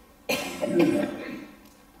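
A man coughing once, starting suddenly about a quarter second in and trailing off within about a second.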